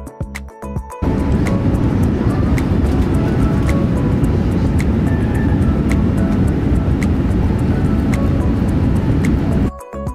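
Boeing 787-9 takeoff roll heard from inside the cabin: a loud, steady rumble of the engines and the wheels on the runway. It starts suddenly about a second in and cuts off just before the end, with background music faintly under it.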